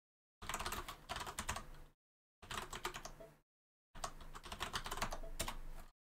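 Typing on a computer keyboard: three bursts of rapid key clicks, each lasting one to two seconds, with dead silence between them.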